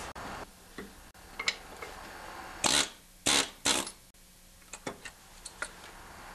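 Pneumatic air hammer fired in three short bursts close together, working a Briggs & Stratton 3.5 hp engine's flywheel loose while it is pried up. Light metallic clicks come between the bursts.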